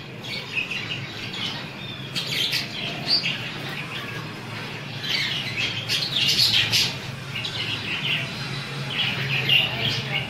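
Caged budgerigars chirping in short scattered clusters, busiest around the middle and again near the end, over a low steady hum.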